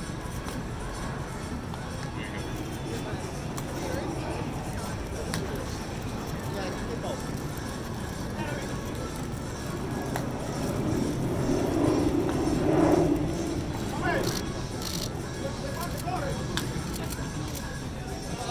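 Indistinct voices and light background music over a steady outdoor background noise, swelling louder about twelve to thirteen seconds in.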